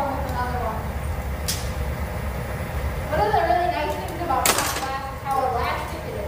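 Steady low roar of the hot shop's gas-fired furnace and glory hole, with a sharp clink of a glassblowing tool about one and a half seconds in and a brief rush of noise near the five-second mark.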